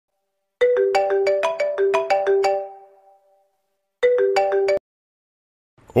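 Phone ringtone for an incoming call: a short melodic phrase of quick ringing notes plays once, then starts again about four seconds in and is cut off abruptly after less than a second as the call is answered. A man's voice says 'Hola' at the very end.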